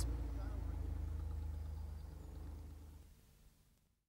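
Narrowboat engine running steadily, with the churn of the boat's wash, fading out over about three and a half seconds.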